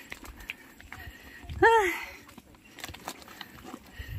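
A person's single short, breathy "ah!" with a sigh, its pitch rising then falling, about one and a half seconds in. Faint footsteps on a path lie underneath.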